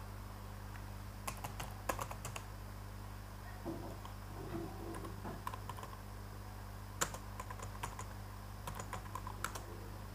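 Computer keyboard being typed in several short bursts of keystrokes, over a steady low hum.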